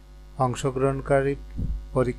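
Steady low electrical mains hum on the recording, with a man's narration starting about half a second in.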